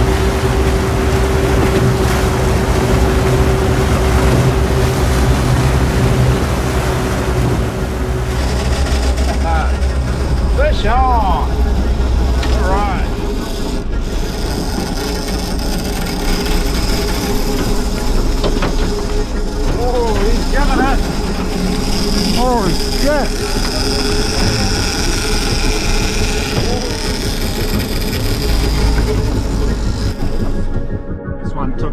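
Boat motor running steadily under way over choppy sea, with water and wind noise. About eight seconds in the sound changes, and short rising-and-falling cries come through now and then.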